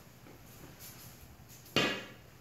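Wooden bo staff's end knocking once on a concrete floor as it is set upright, a single sharp knock near the end that fades quickly.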